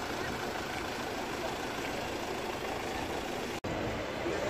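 Steady hum of idling vehicle engines, broken by a momentary dropout near the end.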